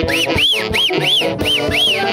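Festive Andean band music with horns and a steady beat, and six quick high whistles over it, each rising and falling in pitch.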